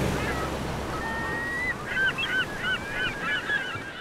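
Birds calling over a steady hiss of surf: one drawn-out call about a second in, then a quick run of short calls through the second half.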